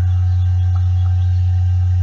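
A steady, loud low hum with a few faint higher tones above it.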